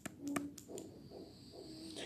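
Faint clicks and taps from writing on a tablet note-taking screen, two sharp ones close together near the start, then a faint low hum.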